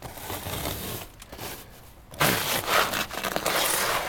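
Slippered footsteps shuffling on a snow-covered wooden deck, with the thin wet snow crunching and scraping underfoot; the crunching grows louder from about halfway through.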